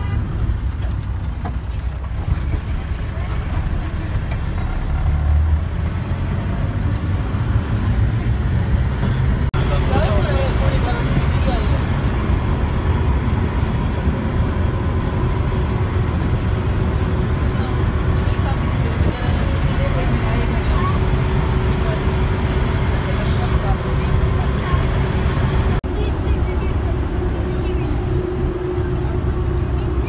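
Minibus running on the road, heard from inside the cabin: a steady low engine and road rumble, with passengers' voices chattering faintly over it.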